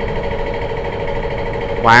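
A steady mechanical hum with a fixed pitch, like a motor running. A man's voice comes back in near the end.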